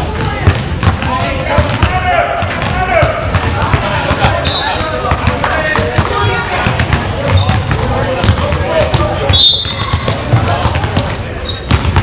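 A basketball bouncing again and again on a sports hall floor, with players' and spectators' voices echoing around the hall.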